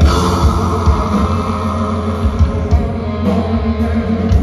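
Live metal band playing loud: distorted electric guitars, bass and drums.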